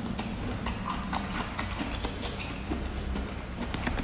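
Crisp, irregular clicks and crackles, several a second, as a bamboo shoot in chili oil is peeled apart by hand and eaten close to the microphone, over a steady low hum.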